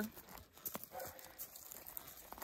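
Faint hoofbeats of a horse walking on soft dirt: a few dull, irregular thuds.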